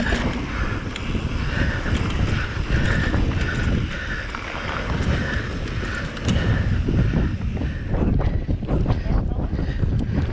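Electric mountain bike riding fast down a dirt trail: wind buffeting the microphone over the rumble of knobby tyres on dirt, with frequent rattles and knocks from bumps that grow busier in the second half.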